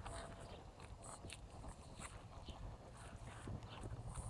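Faint outdoor ambience: scattered short bird chirps over a low, steady wind rumble.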